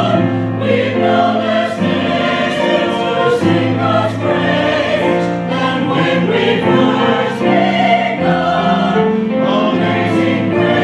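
A choir singing a sacred piece in sustained chords, the harmony moving every second or so.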